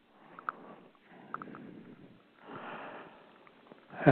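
A man breathing and sniffing softly close to the microphone in three short breaths, with a few faint small clicks in between.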